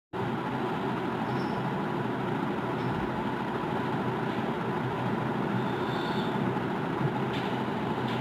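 Steady background noise, an even hiss and rumble that holds at one level with no distinct events.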